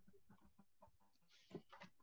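Near silence: faint room tone with a few faint short sounds, a little stronger about one and a half seconds in.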